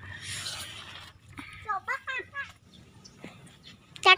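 A brief hiss of rustling noise, then faint voice sounds for about a second near the middle.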